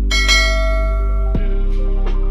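End-screen sound effects: a bright bell-like notification chime rings out and fades over a steady, loud low synth drone. About one and a half seconds in there is a short downward sweep.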